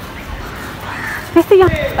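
A bird calling faintly about halfway through, over soft footsteps on a dirt path; a woman's voice starts near the end.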